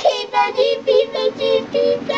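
A young child's voice, pitch-shifted and layered into several copies by a 'G Major' audio effect, making a quick run of about seven short, high, sing-song syllables.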